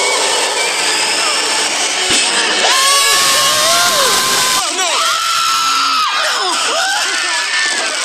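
High-pitched screaming voices of cartoon food over soundtrack music, with an electric blender running for about two seconds in the middle.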